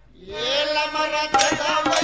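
Telugu devotional bhajan music: after a brief pause, a singing voice comes in on a rising note, and percussion strikes start about a second and a half in.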